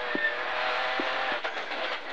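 Rally car's engine and drivetrain heard from inside the cabin while slowing for a corner: a steady whine that falls slightly in pitch, with a few faint knocks as it shifts down from fourth to third.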